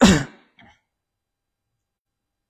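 A person clearing their throat: a loud, short rasp falling in pitch, followed about half a second later by a softer second one.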